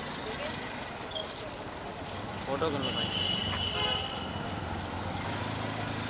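Street traffic: a vehicle horn sounds once, a steady high tone lasting about a second and a half near the middle, over the low running of an engine that comes in about a third of the way through, with indistinct voices.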